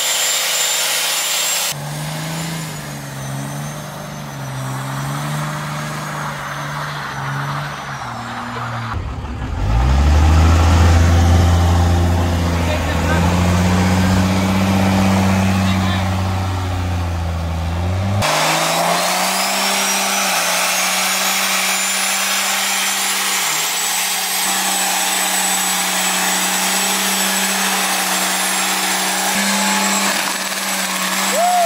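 A first-generation Dodge Ram's Cummins diesel held at high revs during a burnout, its pitch wavering as the rear tyres spin on the pavement. The sound changes abruptly several times, loudest and deepest in the middle stretch, and a high whistle climbs and then holds in the last part.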